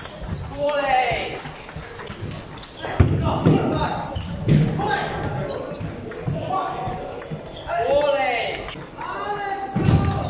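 Table tennis rally: the celluloid ball clicking back and forth off the bats and the table in a large echoing hall. Voices shout or talk over it, loudest about a second in and near the end.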